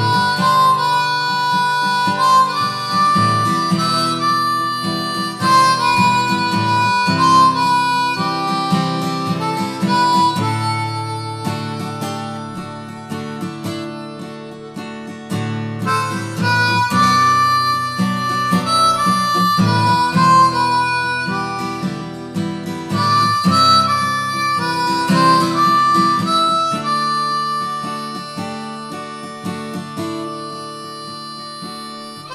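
Harmonica playing a melody over acoustic guitar chords: an instrumental break between the verses of a country song.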